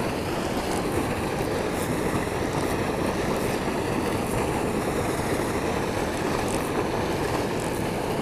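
Steady rush of water pouring out of a spillway outlet and churning into the pool below.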